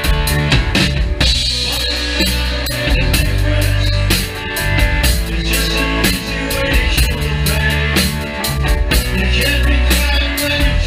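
Rock band playing live: drum kit keeping a steady beat under electric guitar and keyboards, with a heavy bass line.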